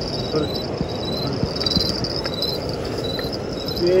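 Crickets chirping in a night chorus: a steady high trill with short, higher chirps repeating about twice a second.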